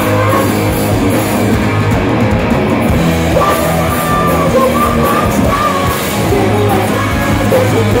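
Live hard rock band playing at full volume: distorted electric guitars, bass and drums, with the lead singer's vocals coming in through the middle.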